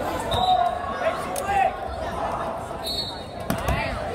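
Spectators' voices in a large gymnasium hall, with dull thuds about half a second in and again near the end, and a couple of brief high squeaks.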